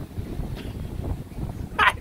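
Gusty wind buffeting the microphone: a low, uneven rumble that swells and dips.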